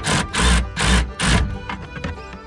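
Ratchet wrench tightening a 10 mm nut on a taillight housing stud: four quick ratcheting strokes about a third of a second apart. The nut is being snugged gently because the housing is plastic.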